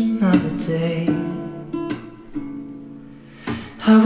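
Background music: a song carried by plucked acoustic guitar. It drops to a quieter, sparser passage through the middle, then comes back in fully near the end.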